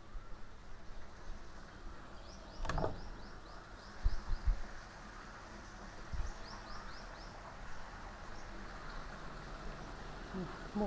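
Quiet ambience with a bird outside repeating short, quick high chirps in two runs. A sharp knock a few seconds in and several dull thumps follow as glass-panelled wooden double doors are pushed open and walked through.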